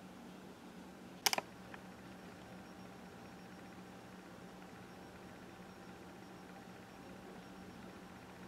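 A quick run of three or four sharp clicks about a second in, then one fainter click, over a faint steady hum of room tone.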